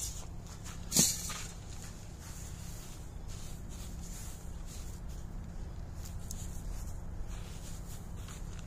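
Hand spreading calcined clay mulch granules over soil, a faint gritty scraping over a steady low background, with one sharp knock about a second in.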